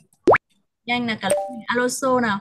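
A short electronic 'plop' sound effect, one quick upward pitch glide about a quarter second in, as the presentation slide changes. Voices reading aloud follow from about a second in.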